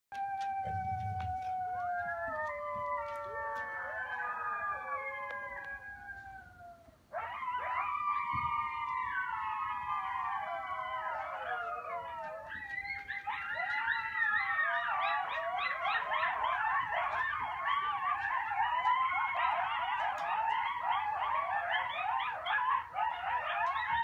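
A pack of coyotes howling in chorus: several long, overlapping howls that fall in pitch, a brief lull about seven seconds in, then a fresh burst of howls. From about halfway it turns into a dense chorus of rapid, wavering yips that carries on to the end.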